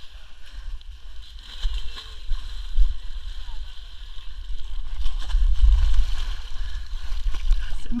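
Muddy water sloshing and splashing as people wade through a mud pit, with faint voices. A steady low rumble is the loudest part and swells a little past the middle.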